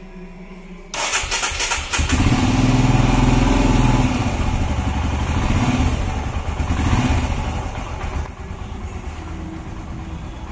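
Royal Enfield Himalayan's single-cylinder engine being started: the starter cranks about a second in and the engine catches a second later. It runs loudly, swells a couple of times, then settles to a lower, steady idle near the end.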